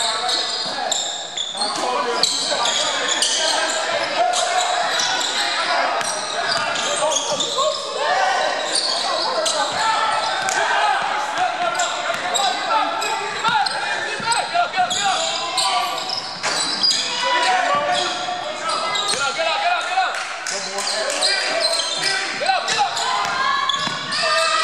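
Basketball being dribbled on a hardwood gym floor during play, with indistinct players' voices echoing in the large hall.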